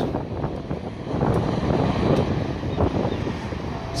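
Low, uneven rumble of city street and tram noise, with wind buffeting the microphone.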